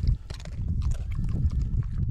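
A dog crunching a cracker taken from the hand, a scatter of short crisp clicks, over a heavy low rumble on the microphone.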